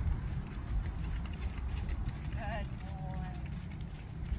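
Hoofbeats of a trotting ex-racehorse on sandy arena footing, under a low rumble of wind on the microphone.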